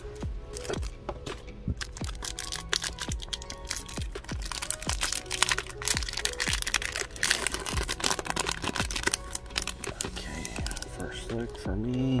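Trading-card pack wrapper crinkling and tearing as it is ripped open by hand: a run of irregular crackles, busiest in the middle, over background music.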